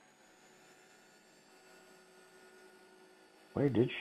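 Faint steady electrical hum with several thin constant tones, including a high whine, cutting in suddenly from dead silence at the start. A man's voice speaks briefly near the end.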